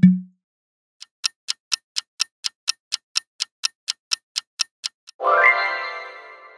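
Clock-ticking countdown sound effect, about four ticks a second for about four seconds, ending in a bright rising chime that rings out as the reveal sound. A low thud fades out at the very start.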